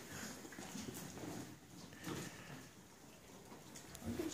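Quiet barn room tone with faint shuffling and rustling on straw bedding, and a soft knock about two seconds in.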